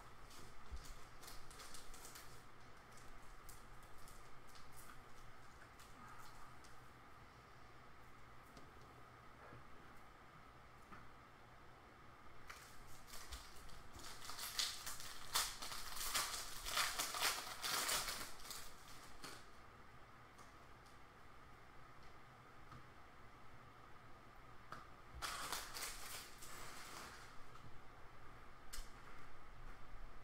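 Hands handling trading cards and their plastic holders and packaging: scattered crinkling and clicking, with a denser stretch about halfway through and another short one near the end.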